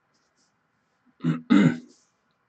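A man clearing his throat: two short rasps in quick succession, starting a little over a second in.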